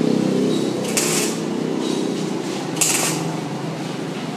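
Arc welding on steel rod: short, hissing bursts from the arc, one about every two seconds, over a steady low hum.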